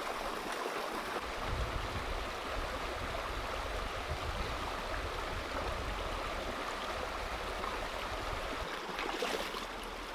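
Shallow rocky stream with small rapids, water rushing steadily over stones.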